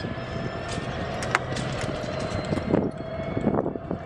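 Golf cart driving up a steep hill under load: a steady running hum with a constant whine over tyre noise. A few sharp clicks and rattles from the cart, the loudest just over a second in.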